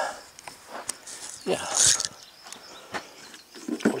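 A man speaking briefly: a drawn-out "yeah" and then "over", with a few faint clicks in the pauses.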